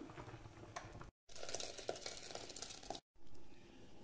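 Steel ladle stirring and scraping through thick rice kheer in a metal pan, with small clicks and scrapes of metal on the pan. The sound drops out completely for a moment twice.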